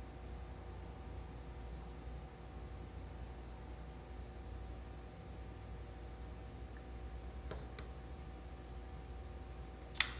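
Quiet room tone with a steady low electrical hum, broken by a couple of faint clicks about seven and a half seconds in and a sharper click at the very end.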